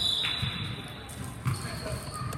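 A basketball bouncing on a hardwood gym floor, with dull thuds at uneven intervals. A steady, high whistle blast about a second long sounds right at the start and is the loudest thing heard.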